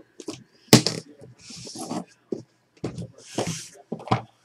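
Small metal-framed trading-card case being opened and handled: a sharp click a little under a second in, then scraping and sliding noises with a few light knocks as a cased card is slid out.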